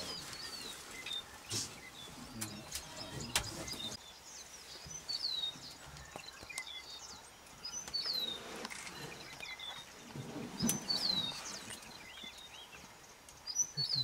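A bird calling repeatedly in the bush: short whistles that slide downward in pitch, one every two to three seconds. There are a few sharp clicks among them.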